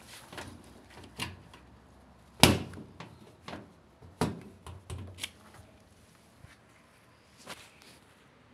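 Irregular knocks and clicks of hands handling hose and fittings against the back panel of a washing machine. One sharp, loud knock comes about two and a half seconds in, and another strong one comes about a second and a half later.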